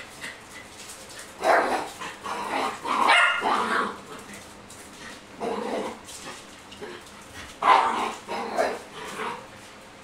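A dog barking in short bouts: a few barks early on, a run of them in the middle, and a close cluster near the end.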